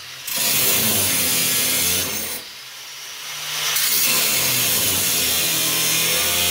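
Angle grinder cutting through the car's sheet-metal floor pan, running loud and steady, easing off for about a second in the middle before biting back in.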